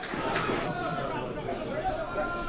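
Open-air pitch ambience at a football match: steady background hubbub with distant shouts from players and a small crowd of spectators.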